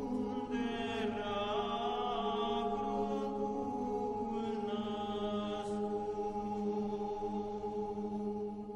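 Romanian colindă (Christmas carol) sung by a vocal ensemble: long held notes over a steady low drone, with higher voices coming in about a second in and again about halfway through.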